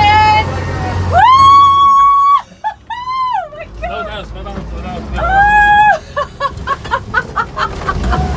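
A woman's long, high-pitched screams, three in the first six seconds, then quick bursts of laughter, as the 1974 Steyr-Puch Pinzgauer 710K goes over an off-road obstacle. The truck's engine hums low underneath, plainest at the start.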